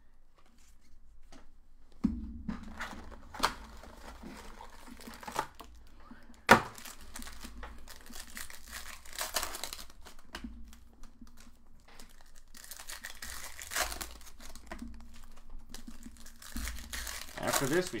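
Trading-card pack wrappers being torn open and crinkled by hand, an irregular crackling with sharp snaps, the loudest about six and a half seconds in.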